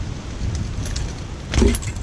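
Rumbling outdoor noise on a GoPro's microphone, with a brief louder clatter about one and a half seconds in.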